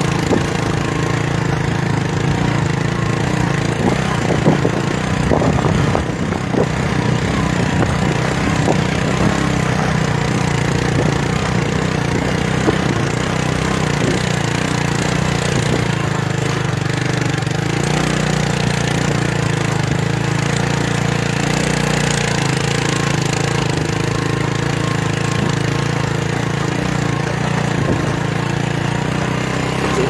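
A vehicle's engine running steadily as it travels along a rough dirt road, a constant low drone.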